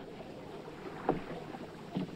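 A pause in the dialogue: faint, steady background noise with one short, soft sound about a second in.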